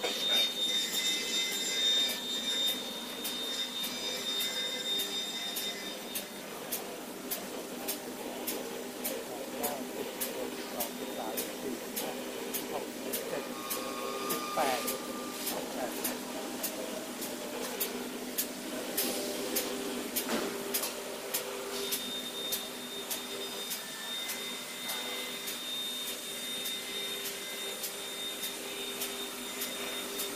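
Paper tube factory machinery running: a steady whine and hum with a regular ticking, about two ticks a second, through the middle. A voice shouts once about halfway.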